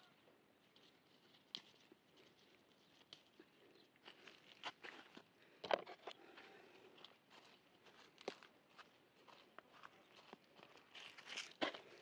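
Faint, scattered rustles, snaps and crunches of hands picking chili peppers among the leaves and handling harvested vegetables, with one sharper click about halfway through and a small flurry near the end.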